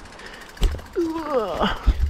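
A short wordless cry from the rider, gliding in pitch, as he rides through overhanging branches, just before one catches his head. Low thumps about half a second in and near the end, over a steady rushing hiss.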